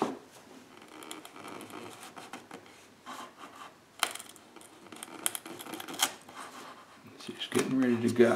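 Wood chisel levering and paring waste out of a sawn slot in a thin wooden box side: light scraping with a few sharp clicks and cracks as wood fibres split away.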